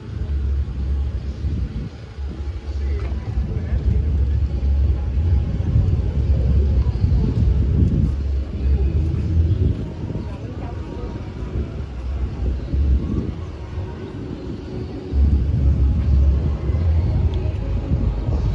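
Wind buffeting the microphone outdoors: a gusty low rumble that swells and dips, stronger for several seconds from a few seconds in and again near the end, over faint street traffic.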